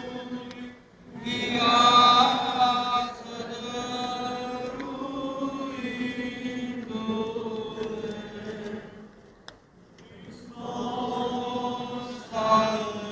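Orthodox liturgical chant sung on Resurrection night, held vocal lines in long phrases. It breaks off briefly about a second in and again near the end.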